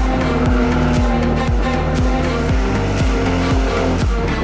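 Music with a steady thumping beat over a 1989 BMW E30 325i's M20B25 straight-six with Hartge headers, held at steady high revs while drifting, with the rear tyres squealing. The held engine note stops shortly before the end.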